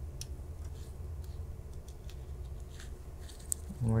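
Faint handling sounds, a few light ticks and rustles, as a thin internal server cable is held and lined up with its connector by gloved hands, over a low steady hum.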